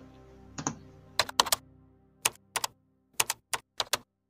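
Keyboard typing sound effect: about a dozen sharp key clicks in quick, uneven groups of two or three, over the tail of the outro music, which fades out in the first two seconds.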